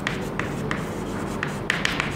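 Chalk writing on a chalkboard: a string of short, irregular scratches and taps as the letters are stroked out.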